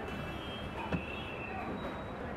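Road traffic noise with a faint high-pitched whine, and a single light knock about a second in.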